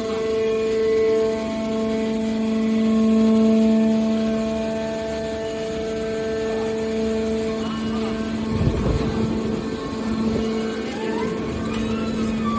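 Hydraulic power unit of a horizontal scrap-metal baler running with a steady hum that swells and eases in level. A brief rumbling clatter comes about eight and a half seconds in, and a whine rises in pitch near the end.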